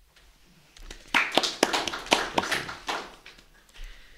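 A small audience applauding at the end of a poem: brisk clapping starts about a second in, runs for about two seconds, then thins out to a few scattered claps.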